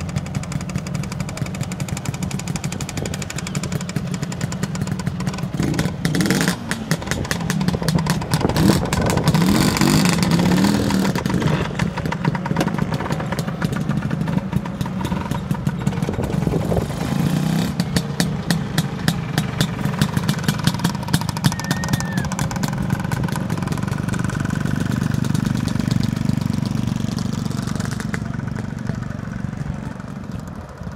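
Vintage two-stroke scooter engine running close by with a rapid popping exhaust beat, revved up several times about six to twelve seconds in, then running on and fading away near the end.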